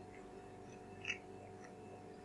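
Faint chewing of a mouthful of soft banana, with a single small wet mouth click about a second in, over a steady low hum.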